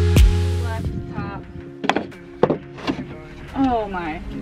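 Background music with a steady beat fades out about a second in. A few sharp wooden knocks follow, from a plywood wheel-well box being set in place, with short voice sounds among them.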